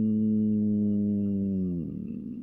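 A man's long, held "ummm" hesitation hum, steady in pitch, which sags in pitch and fades near the end.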